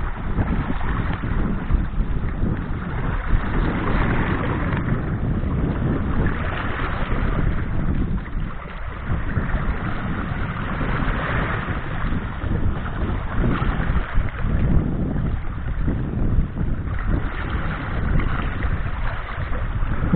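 Small sea waves washing onto a pebble beach, swelling and fading every few seconds, with wind rumbling on the microphone.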